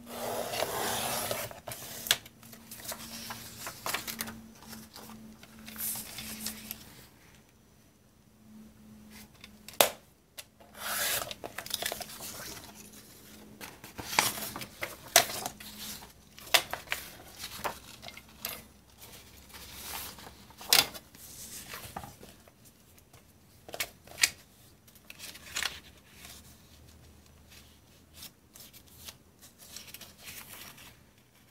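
A sliding paper trimmer's blade carriage run along its rail, cutting through a sheet of ledger paper, a rasping stretch at the start. Then paper sheets rustle and are shifted and laid on the trimmer, with scattered sharp clicks and knocks.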